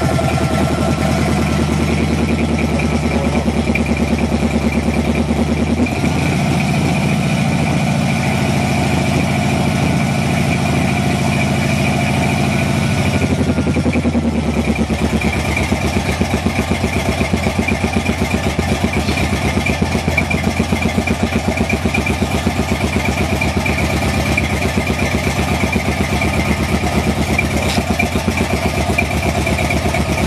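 Buick 455 V8 with a Holley 850 double-pumper carburettor idling steadily, heard from inside the car's cabin while it warms up. About 14 seconds in the idle note changes and the firing pulses become more distinct.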